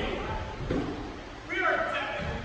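Indistinct voices in a large indoor hall: brief bits of talk and calling from players, not clearly spoken near the microphone.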